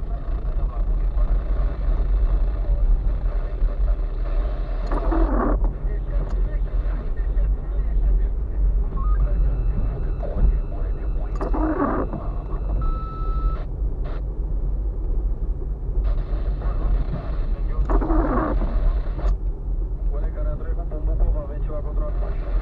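Car interior noise of a slow drive over a rough, potholed dirt road: a steady low rumble from engine and tyres. Three times, about six and a half seconds apart, a windshield wiper sweeps across the wet glass with a short falling swish.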